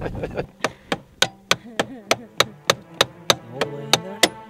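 A hand hammer striking in quick, even blows, about three or four a second, driving a wooden stick into a snowmobile's makeshift steering repair.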